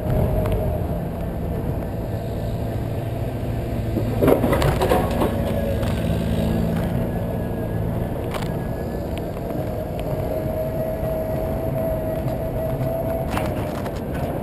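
Solowheel electric unicycle riding along a street: a steady high whine from its hub motor over low tyre and road rumble, with the camera mount rattling. A louder bout of knocks and rattling comes about four seconds in, and the whine grows clearer near the end.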